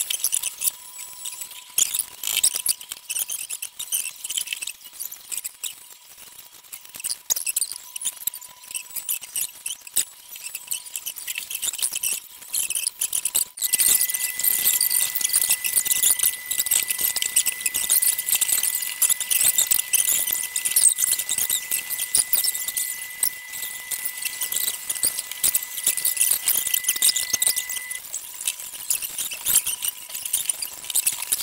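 An 11x11 plastic puzzle cube turned rapidly by hand: a dense, continuous run of small plastic clicks and rattles, louder from about halfway through. A faint steady high tone sounds throughout, joined by a second, higher one from about halfway until near the end.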